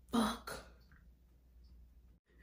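A woman clearing her throat: two short rough bursts in quick succession right at the start.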